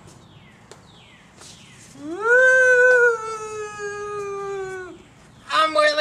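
Three short falling whistles, then a long, loud howl that rises at the start and holds for about three seconds, slowly sinking in pitch before it stops.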